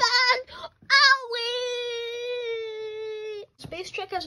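A child's high voice gives a short cry, then holds one long wailing 'aaah' note for about two and a half seconds, sagging slightly in pitch before cutting off.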